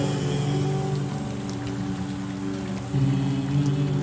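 Wordless layered male vocal harmonies, with no instruments, holding sustained chords between sung lines; the voices move to a new chord about three seconds in. The track is slowed down and drenched in reverb, with a light hiss underneath.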